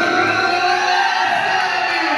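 A man's voice in one long drawn-out call that rises in pitch and then falls, with crowd noise and cheering behind it.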